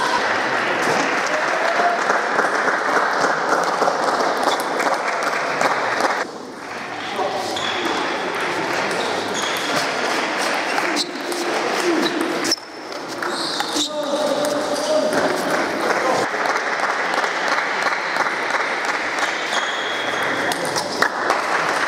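Table tennis ball clicking off bats and table in rallies, over a steady hum of many voices and play at other tables echoing in a large sports hall. The background drops away abruptly twice.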